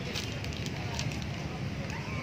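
Outdoor open-air ambience: a steady low rumble with faint distant voices and scattered light crackles.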